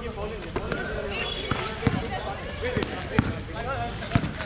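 Basketball bouncing on an outdoor concrete court: a few hard single bounces in the second half, with players' voices calling out around them.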